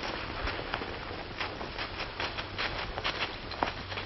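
Steady hiss of an old 1930s optical film soundtrack, with irregular crackling clicks scattered throughout.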